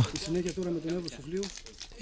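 Speech only: a quieter man's voice talking briefly, fading out in the second half to low background noise.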